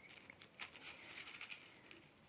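Faint rustling and crackling of a hamster moving through wood-shaving bedding, a quick run of small clicks and crinkles from about half a second in to near the end.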